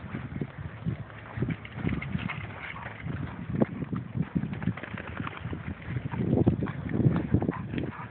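Footsteps on soft dirt and dry brush: irregular low thuds with rustling and crackling, getting louder about six seconds in.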